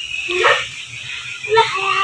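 A dog barking briefly, with a short yelp about half a second in, among children's voices.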